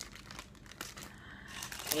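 Clear plastic bag of cigars crinkling as it is handled: a run of light, irregular crackles.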